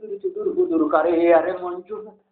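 A man's voice in a drawn-out, chant-like utterance, with long held vowels.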